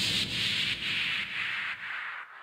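Soft rubbing, rustling noise that swells and ebbs a few times a second, then fades out near the end.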